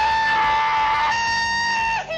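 A man's long cowboy yell held on one high, steady pitch, stepping slightly about a second in.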